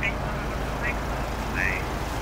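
Steady low rumble of outdoor background noise, with three short, high chirps.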